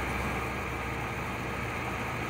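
Steady low hum with hiss: background noise picked up by the recording microphone.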